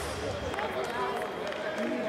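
Indistinct talking from several people in the background, with a few footsteps and light knocks.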